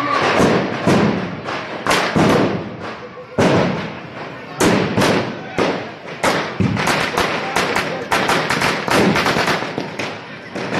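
Firecrackers going off: a string of loud bangs, turning into a dense rapid crackle in the last few seconds, over a shouting crowd.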